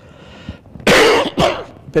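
An elderly man coughing: one loud cough about a second in, with a weaker second one just after, before he starts speaking again.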